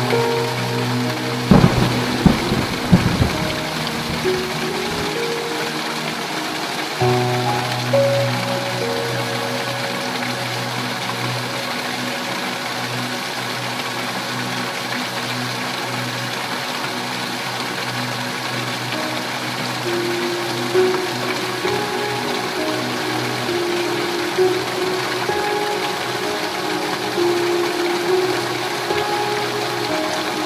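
Heavy rain falling steadily. A thunderclap about a second and a half in, with a few sharp cracks and a rumble that dies away by about five seconds. Soft sustained background music plays under the rain, its notes changing every few seconds.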